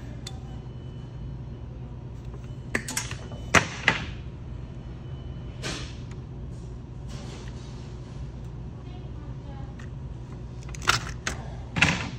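Hand wire cutter/stripper snapping as wire ends are cut off and stripped: a few sharp separate clicks, two close together about four seconds in, one near six seconds and two near the end, over a steady low hum.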